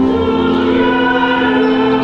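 Choir singing a hymn in slow, held chords, the notes changing at the start and again near the end.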